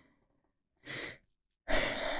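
A woman breathing audibly: a short breath about a second in, then a longer sigh near the end.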